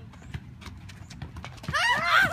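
Scattered light thuds of a soccer ball being kicked and headed, with footfalls on a running track. Near the end, a sudden burst of girls shrieking and cheering.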